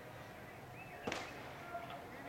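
A single sharp knock about a second in, over a faint open-air background.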